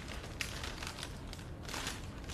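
Paper sterile-glove wrapper crinkling softly as a gloved hand picks the right surgical glove up out of it, with a couple of short rustles.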